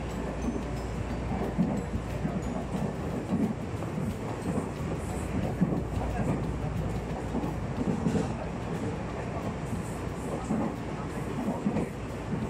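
Tobu Tojo Line commuter train running at about 78 km/h, heard from inside the carriage: a steady running rumble with irregular low knocks from the wheels and track.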